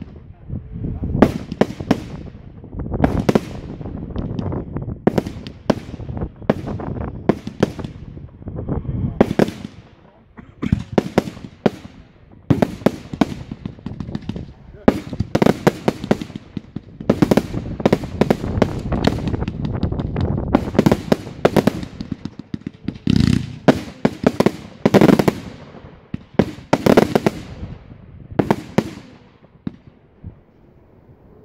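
Aerial fireworks going off in quick succession: sharp bangs, often several close together, each trailing off in a low rumble, with a couple of short lulls.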